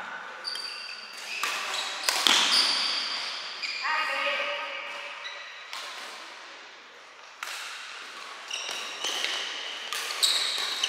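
Badminton rally: sharp racket strikes on the shuttlecock at irregular intervals, mixed with short high squeaks of court shoes on the floor.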